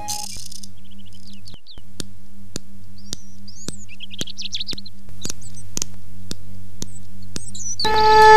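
Small birds chirping in short high calls over a steady low hum, with a sharp tick about twice a second.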